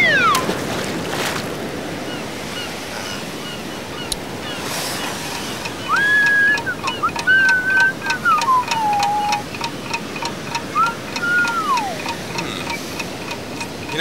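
Surf washing on a beach. About six seconds in, high whistled notes join it: a few are held, then glide down.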